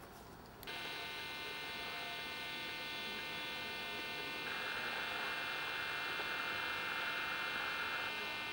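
A steady buzz made of many high pitches starts abruptly a little under a second in and gets louder about halfway through.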